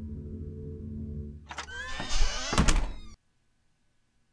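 A low, steady droning music bed. About one and a half seconds in, a short burst of sound effects with sliding pitches and two heavy thunks cuts in, then everything stops abruptly about three seconds in, leaving silence.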